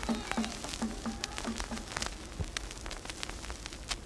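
The song's last drum beats die away in the first two seconds, leaving the crackle and scattered pops of an old vinyl record's surface noise.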